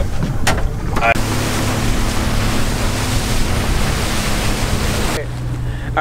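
A Yamaha 200 outboard boat runs underway with a steady low engine hum under a wash of water rushing past the hull and wind on the microphone. It starts about a second in and cuts off abruptly a little before the end.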